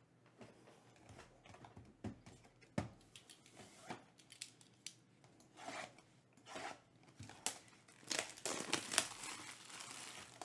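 Plastic shrink-wrap being cut and torn off a sealed trading-card box. At first there are scattered clicks and rustles, then dense crinkling from about eight seconds in as the wrap is pulled away.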